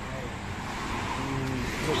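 Road traffic noise, a steady rumble and hiss of passing vehicles, growing a little louder in the second half, with voices talking over it.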